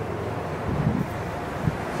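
Wind rumbling on the microphone, a steady low noise with a couple of faint soft knocks about a second in and near the end.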